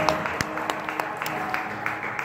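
The last held chord of a worship song fades out while scattered hand claps and applause break out.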